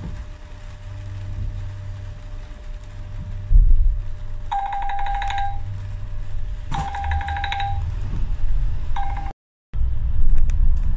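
London double-decker bus running with a low engine hum and a heavy thump, then its door warning buzzer sounding three times: two pulsing beeps of about a second each and a short third one near the end.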